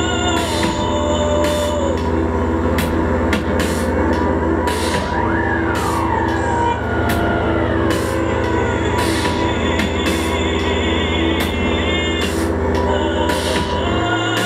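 Dark electronic noise music played live: a low drone under a pulsing tone, with slow gliding, falling whines in the middle and sharp noise hits recurring throughout.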